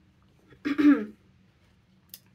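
A woman clearing her throat once, a short rough burst about half a second in.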